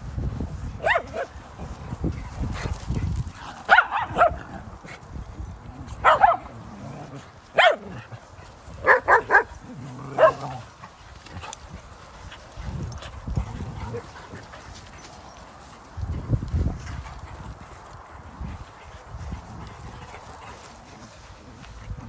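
Dogs at play barking: short, sharp barks about eight times in the first ten seconds, including a quick run of three about nine seconds in, then the barking stops. Low rumbling noise comes and goes underneath.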